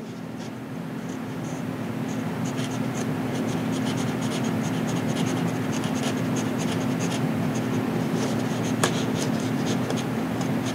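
Knife blade scraping and shaving bead foam, a continuous scratchy rasp with many small ticks, growing louder over the first few seconds; the foam is being trimmed down to seat a plywood retract mount level. A steady low hum runs underneath.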